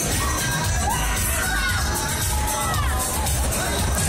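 Riders screaming and shouting on a swinging KMG Afterburner pendulum ride, several voices rising and falling through the middle seconds. Loud fairground dance music with a steady bass beat plays underneath.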